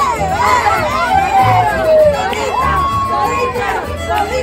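Mariachi band playing, with regular bass notes underneath, while the crowd shouts and cheers over the music. There is a long sliding yell about halfway through and a long held note near the end.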